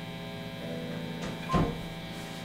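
Steady electrical mains hum and buzz from an amplified band rig, a low hum with many overtones. A single short knock or touch sounds about one and a half seconds in.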